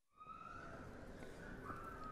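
Quiet ambience of a large hall with an audience: a low murmur, a few light clicks and a couple of faint, short high tones.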